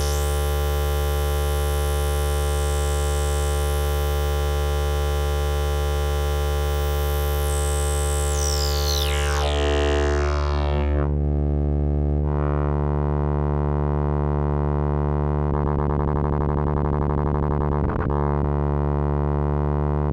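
Ciat-Lonbarde Peterlin, a Benjolin-type synthesizer, playing a sustained buzzy drone from one oscillator through its filter. About nine seconds in the filter closes down and the bright tone goes dull. Toward the end a fast fluttering pulse comes in, with a brief downward swoop.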